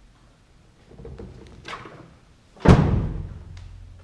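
Pickup truck tailgate being raised and slammed shut: one loud, heavy slam about two and a half seconds in, after some quieter handling sounds.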